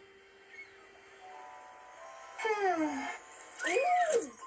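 Cartoon soundtrack playing from a TV: faint held tones, then a pitched sound sliding downward about two and a half seconds in. Near the end comes a short cartoon-character vocalization that rises and falls in pitch.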